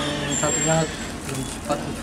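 A man speaking in short phrases over steady background noise with a low rumble, which may be traffic.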